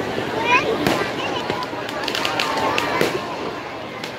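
Firecrackers bursting in a burning Dussehra Ravan effigy: scattered sharp cracks, the loudest about a second in and near three seconds, over the shouting and chatter of a large crowd.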